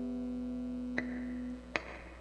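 The last chord of an amplified acoustic guitar piece ringing out and slowly fading, then stopped short about one and a half seconds in. There are two sharp clicks, one about a second in and one near the end, over a steady low amplifier hum.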